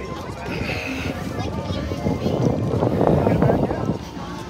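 Crowd hubbub: many people talking at once as they walk past, growing denser and louder in the second half.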